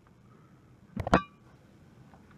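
A quick double knock against a hard desk, the second much louder, with a short metallic ringing after it. The rest is quiet room tone.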